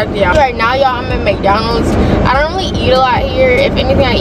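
A woman talking inside a car, with the low steady hum of the car underneath.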